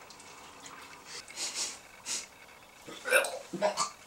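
Coffee poured from a glass carafe into a paper cup, then two short, loud mouth noises near the end.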